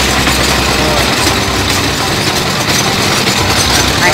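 Engine of a well-drilling rig running steadily, with a fast rhythmic low-pitched chug.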